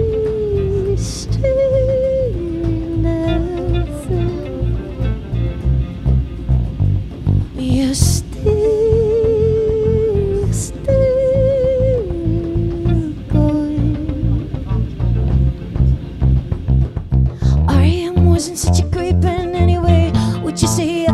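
Live art-pop band playing a passage without lyrics: drums and bass guitar under a slow lead melody of long, wavering held notes, with the phrase coming round again about every ten seconds.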